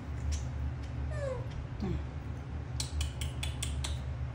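A baby macaque gives two short, squeaky calls that fall in pitch, followed near the end by a quick run of about six sharp clicks.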